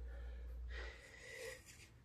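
Faint room tone with a low steady hum that drops out about a second in, and a faint breath close to the phone's microphone.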